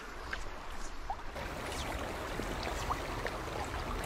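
Steady rushing of river water flowing, with a couple of faint short chirps.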